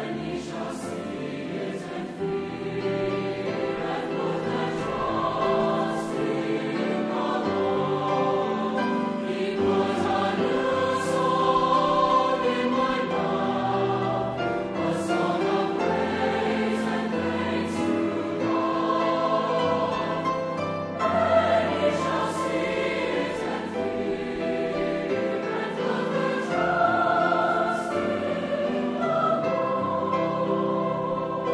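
Large mixed choir of men's and women's voices singing a sustained choral piece in several parts, with crisp 's' consonants sung together now and then.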